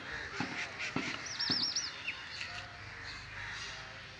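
A small bird calling a quick run of four high, looping chirps about a second in. A few light clicks come from handling the extinguisher's metal valve head.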